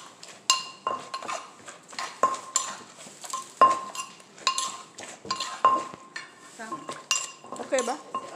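Wooden pestle pounding papaya salad in a clay mortar, sharp strikes about twice a second, with a metal spoon clinking against the mortar as the ingredients are turned.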